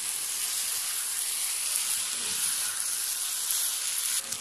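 Chicken pulao sizzling steadily in a nonstick pan: boiled rice and chicken masala being turned over with a plastic spoon.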